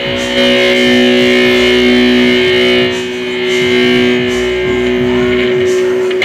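Ibanez RG5EX1 electric guitar holding long sustained notes over backing music with a regular low pulse.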